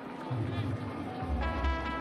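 Music with a heavy bass beat coming in about half a second in, and a long held note joining it midway.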